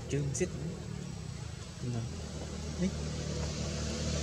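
Steady low hum of a running vehicle engine, with snatches of people's voices talking briefly near the start, around the middle and a little later.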